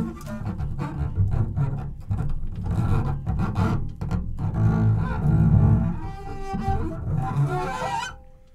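Free-improvised jazz from a horn trio of saxophones, clarinets and trombone. Dense, shifting low-register lines dominate, and higher horn phrases join in the last couple of seconds.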